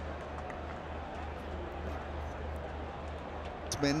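Steady background ambience of a cricket stadium broadcast: an even hiss with a constant low hum beneath it and no distinct hits or cheers.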